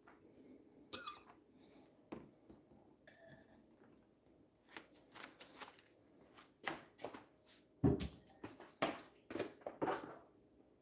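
Sparse light knocks and clinks of kitchenware being handled on a countertop, coming more often in the second half, the loudest a little before eight seconds in.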